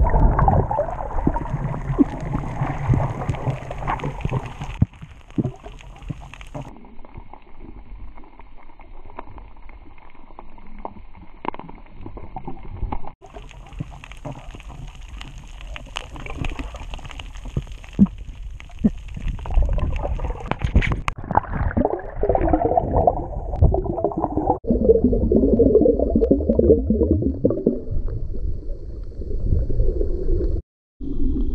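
Water sloshing and gurgling around a camera held underwater, muffled, with scattered sharp clicks; it grows louder and busier in the last several seconds.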